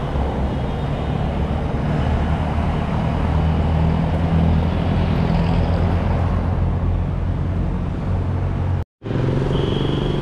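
Street traffic: motor vehicle engines running with a steady low rumble. Just before the end the sound drops out for an instant and comes back changed, with a short high tone.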